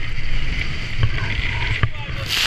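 Robalo powerboat running through rough chop: a loud, dense rumble of wind and water against the bow, broken by a few sharp knocks as the hull meets waves and spray strikes the camera.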